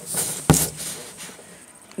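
Handling noise on a phone's microphone as hands move close to it: a brief rustle, then one sharp knock about half a second in.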